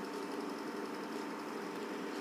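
A steady, faint background hum with a few even tones in it, unchanging throughout.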